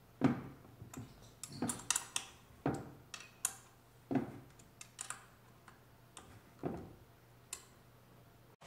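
A small hex key turning and tapping the metal lid screws of a grey plastic outdoor PoE switch enclosure as they are fastened. It makes a string of irregular sharp clicks and light knocks, roughly one or two a second.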